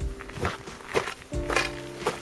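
Footsteps on loose volcanic gravel, about two steps a second, climbing a steep slope, with background music holding steady notes.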